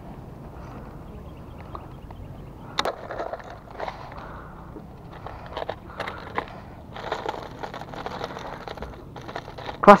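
Clear plastic Daiwa lure box being handled: a sharp click about three seconds in as it is opened, a few more clicks, then hard plastic lures rattling and rustling for a couple of seconds as they are picked through.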